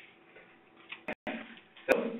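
Faint room tone in a pause between speech, broken by brief sharp clicks about a second in, where the audio cuts out for a moment, and again just before a voice starts near the end.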